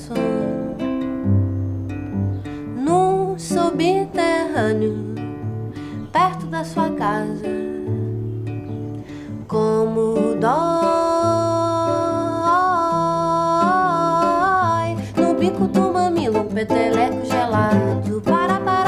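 A song played on guitar with a singing voice. About ten seconds in, the voice holds one long note for some five seconds, wavering slightly in pitch.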